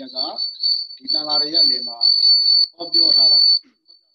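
A steady, high-pitched single tone whistles over a man speaking in short phrases, and fades out just before the end.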